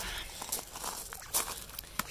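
Footsteps on a woodchip mulch path, a few crunching steps.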